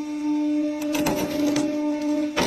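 A hydraulic press's yellow wedge crushing and splitting a twine-wrapped bundle of white tubes: a run of sharp cracks and snaps from just under a second in to about a second and a half, over the steady hum of the press.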